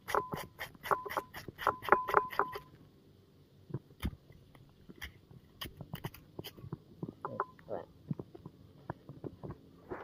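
A metal spoon scraping the flesh of unripe green Siamese bananas into thin shavings: quick repeated strokes, about five a second for the first two and a half seconds, then slower and sparser.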